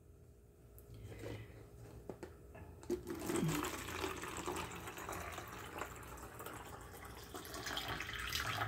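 Water poured from a plastic cup into a cut-down plastic water bottle: a light knock just before three seconds in, then a faint, steady stream of water filling the bottle.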